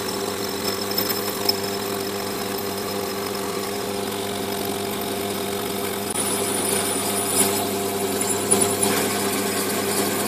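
Metal lathe running steadily while a tool cuts an aluminium tube to size. From about six seconds in the cut gets louder, with high scratchy spikes as the stringy swarf comes off.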